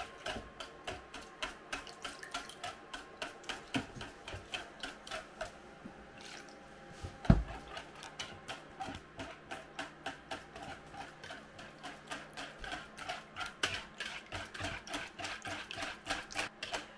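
Wire whisk beating eggs and milk in a plastic bowl: a steady rhythm of quick clicks and liquid sloshing, about three strokes a second. There is a brief lull about six seconds in, then a single thump.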